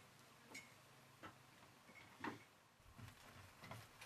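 Faint, irregular wooden knocks and creaks of someone climbing an old wooden ladder, roughly one step every half to three-quarters of a second, the loudest a little past two seconds in.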